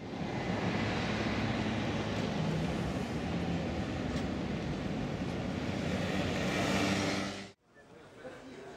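Outdoor traffic noise: a steady rumble of vehicles with a low engine hum, cutting off suddenly near the end.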